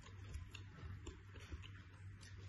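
Faint mukbang eating sounds: chewing and small mouth clicks as fried chicken nuggets and rice are eaten by hand, heard as irregular soft ticks.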